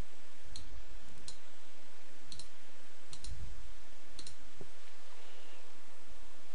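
Computer mouse clicking, about five short clicks spread over a few seconds, over a steady recording hiss.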